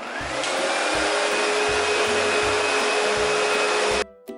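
Windsor Sensor S15 commercial upright vacuum cleaner running on carpet. Its motor spins up over the first half-second with a rising whine, then runs loud and steady with a high whine. The sound cuts off suddenly at the very end.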